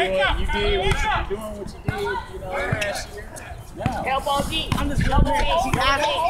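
A basketball bouncing a few times on an asphalt court, amid several people talking and calling out.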